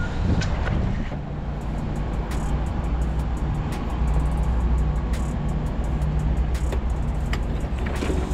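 A forklift's engine running in a steady low rumble as it drives up to the van, growing louder about halfway through, with scattered light clicks and rattles.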